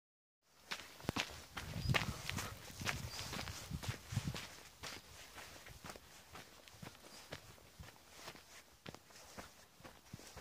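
Footsteps on dry dirt and grass: irregular crunching steps with sharp clicks, busiest in the first few seconds.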